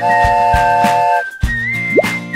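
Cartoon train whistle: a chord of several steady tones sounded once for about a second and a quarter, over children's background music.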